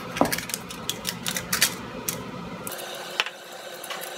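Aluminum foil crinkling and crackling with quick clicks as a small foil piece is handled and pressed down onto a plastic pickguard, the clicks busiest in the first two and a half seconds.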